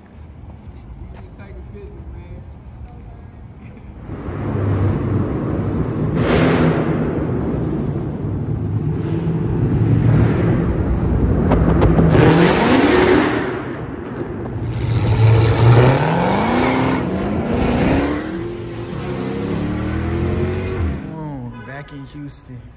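Dodge Charger engines running and accelerating inside a concrete parking garage. The engine sound comes in about four seconds in, and the pitch climbs under throttle several times in the second half.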